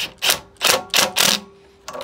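Cordless impact gun with an 8 mm socket, run in about five short trigger bursts to snug down a bolt on a small engine's starter solenoid, stopping short of full hammering so as not to over-tighten.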